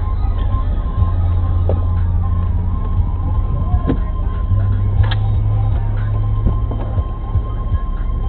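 Steady low hum of a stationary car heard from inside the cabin, with music playing and a few small clicks. The low hum steps up slightly about halfway through.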